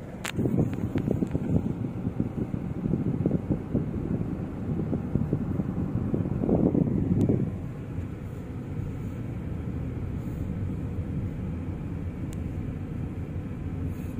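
Car driving slowly through town traffic, heard from inside the cabin: a steady low rumble of engine and tyres, swelling briefly about halfway through.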